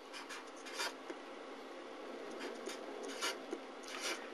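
Felt-tip marker pen writing on paper: a string of short, faint strokes.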